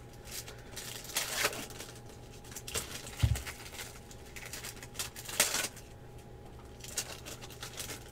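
Foil trading-card pack wrappers crinkling and tearing, and cards being handled, in several short rustling bursts, with one dull low thump about three seconds in.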